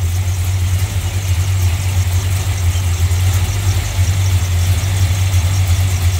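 1967 Plymouth Belvedere GTX's 440 Super Commando big-block V8 idling steadily, with no revving.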